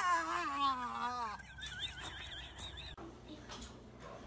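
A person's long, wavering scream that slowly falls in pitch, followed by a higher, shrill wavering cry. It cuts off abruptly about three seconds in, leaving faint room sound.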